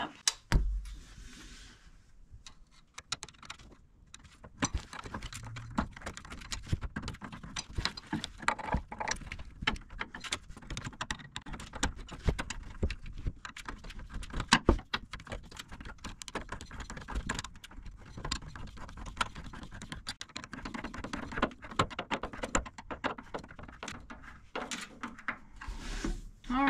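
A wrench turning the screw of a worm-drive hose clamp to tighten it on a lower radiator hose, making a long run of rapid, irregular metallic clicks that starts a few seconds in.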